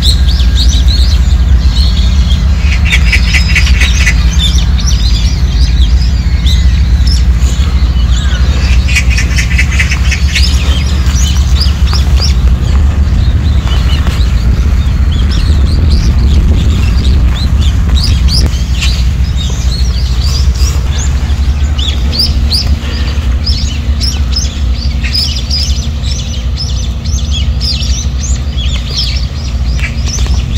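Wild birds chirping and calling in many short notes, with two rapid buzzing trills near the start. A loud, steady low rumble runs underneath.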